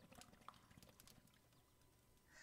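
Faint bubbling of water in a hookah's base as smoke is drawn through it: a quick run of small pops and gurgles, mostly in the first second.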